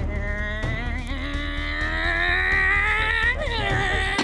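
A woman imitating a motorcycle engine with her voice: one long rising revving call that peaks and falls away near the end. Background music with a low pulsing beat runs underneath.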